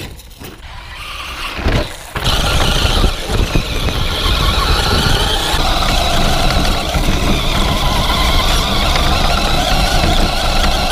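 Brushless electric motor and drivetrain of a Traxxas Slash 2WD RC truck running fast over rough dirt, heard from a camera mounted on its chassis: a loud, steady whine over rumbling tyres and rattle. It starts suddenly about two seconds in, after a quieter stretch.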